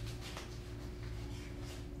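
Scissors snipping the corner of a plastic bag of live aquarium sand, a few faint light clicks, over a steady low hum.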